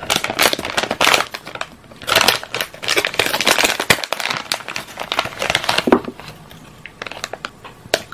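Crinkly blind-bag packet crackling and rustling as fingers tear it open and dig the toy out. The crinkling is busiest for the first six seconds and thins to a faint rustle near the end.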